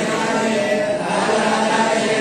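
A group of voices chanting Sanskrit mantras together, steady and continuous, with held, droning pitches.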